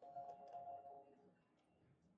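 Faint electronic tones from a bubble craps machine, a few notes held together that die away after about a second, then near silence.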